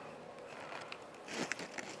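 Mostly quiet room tone, then a few faint rustles and soft clicks near the end as fingers handle a small circuit board and an electrolytic capacitor.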